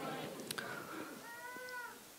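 A faint, high-pitched cry lasting about half a second near the end, rising and falling slightly, over a low background murmur, with a single sharp click about a quarter of the way in.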